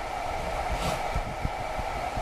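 A steady fan-like whir in the background, with a few faint scratches and taps of a ballpoint pen writing on paper.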